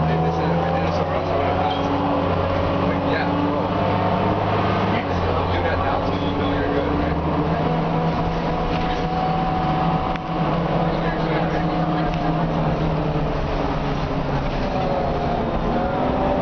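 Cummins M11 inline-six diesel of an Orion V transit bus with an Allison B400R automatic transmission, heard from inside the passenger cabin while driving. The engine and driveline pitch climbs and levels off a few times as the bus accelerates through its gears, and runs steady in between.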